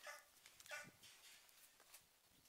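Two faint, short, high-pitched animal yelps, under a second apart.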